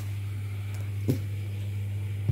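A camera being handled and set down on a hard floor: a single short knock about halfway through, over a steady low hum.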